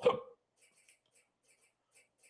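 The end of a man's word fading out in the first moments, then near silence: a pause in speech.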